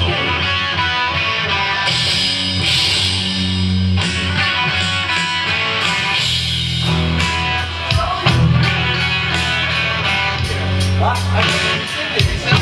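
A live rock band playing an instrumental passage, with electric guitar to the fore over keyboards.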